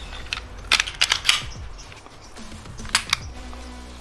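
Taurus G3C pistol's slide and frame being handled and fitted back together by hand: a quick cluster of sharp clicks about a second in, then two more clicks near the three-second mark.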